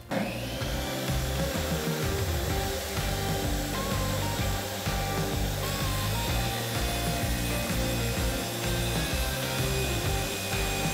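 Jobsite table saw running steadily, its blade cutting the notched rubber edge off a squeegee to leave a flat edge, over background music.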